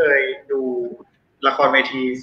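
Speech: a man talking, with a brief pause about a second in.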